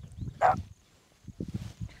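A single short animal call, like a distant dog bark, about half a second in, followed by low, soft thuds and rustling.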